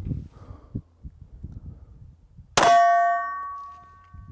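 A single 9mm pistol shot from a Glock 17 Gen 5 about two and a half seconds in, with the struck steel silhouette target ringing in several clear tones that die away over about a second and a half.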